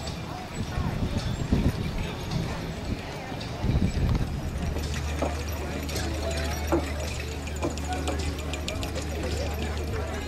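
Hoofbeats of a four-horse team trotting on turf while pulling a carriage, with a run of sharp clicks in the later seconds. A steady low hum comes in about halfway.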